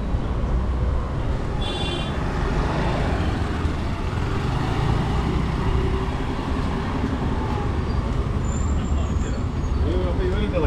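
Street traffic with motorbikes and scooters running past, a steady low rumble throughout. A short horn beep sounds about two seconds in.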